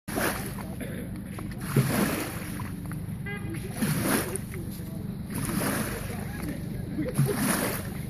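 Small waves washing up a concrete boat slipway, breaking louder about three times, over a steady low rumble.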